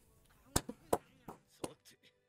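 A run of about six short, sharp clicks or taps, irregularly spaced, starting about half a second in.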